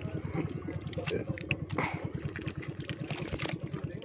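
A small engine runs steadily in the background with a rapid, even beat, while hands squelch and dig in thick wet mud.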